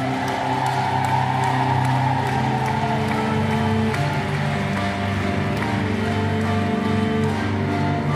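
Grand piano and cello playing an instrumental passage of long held notes.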